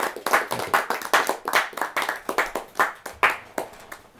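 A small audience applauding, the separate hand claps distinct and uneven, dying away shortly before the end.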